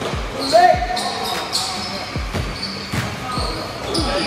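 Basketball bouncing on a hardwood gym floor in a run of dribbles, with short high sneaker squeaks and voices echoing in the gym.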